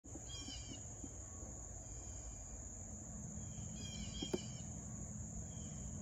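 Faint outdoor ambience: a steady high-pitched insect drone over a low rumble, with a bird chirping briefly twice, about half a second in and again around four seconds, and a single click just after the second chirps.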